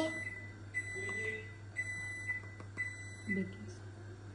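A faint, high, steady electronic tone that sounds on and off in three or four stretches over a low steady hum.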